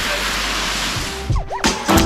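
Steady wash of sea water and crowd noise that cuts off about a second and a half in. A short swooping sound follows, then background music with a beat starts near the end.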